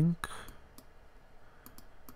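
A few faint, separate clicks of a computer mouse button, at a low level.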